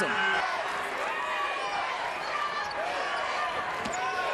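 Live basketball arena sound: crowd noise with sneakers squeaking on the hardwood court and a ball bouncing, with one sharp thump near the end.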